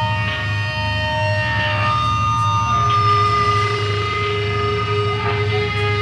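Live heavy band music: electric guitar holding long sustained notes that change pitch a couple of times, over a steady low bass drone, with a few faint cymbal taps.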